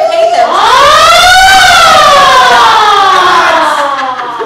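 A person's long, loud, high-pitched whoop or howl, rising in pitch for about a second and then sliding slowly down for over two seconds.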